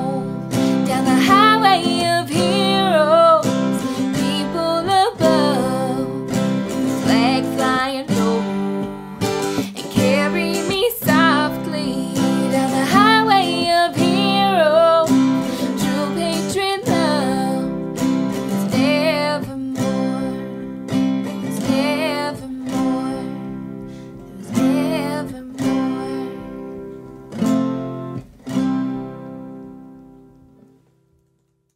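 Acoustic guitar strummed through the closing bars of a song, with a wavering melody line above it for about the first half. The strums then thin out to a few ringing chords and the music fades away near the end.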